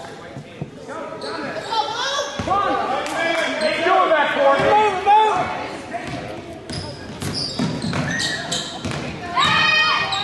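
A basketball dribbling on a hardwood gym floor amid voices of players and spectators calling out, echoing in a large gym. The voices are loudest a couple of seconds in and again near the end.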